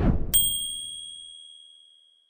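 A short whoosh, then a bright bell-chime sound effect struck once about a third of a second in, ringing and fading over the next second and a half. It is the notification 'ding' for an animated subscribe-bell button being clicked.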